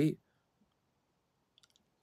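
A spoken word trails off, then near silence with one faint little click about one and a half seconds in.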